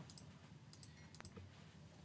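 Near silence: faint room tone with a few small, faint clicks, the clearest about a second in.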